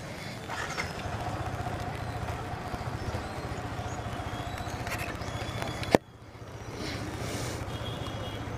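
Motorcycle engine running at low revs as the bike rolls slowly forward. A sharp click comes about six seconds in, after which the sound dips briefly and then returns.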